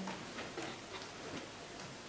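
Faint, light ticking in an otherwise quiet room.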